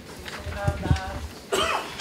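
Indistinct voices, with a person coughing about a second and a half in.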